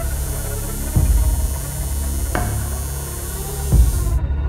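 Steady electric buzzing of a tattoo machine, cutting off suddenly at the end, with three brief thumps over it, the last the loudest.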